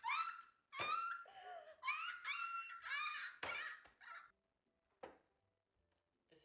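A woman laughing hard in a run of high, squealing bursts, each one sliding down in pitch. The laughter stops about four seconds in.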